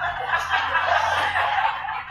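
Several people laughing together, loud and sustained.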